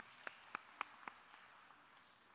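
A few faint, light handclaps, about four a second, dying away after about a second, then near silence.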